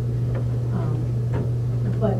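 Steady low electrical hum, with a few faint short ticks scattered through it.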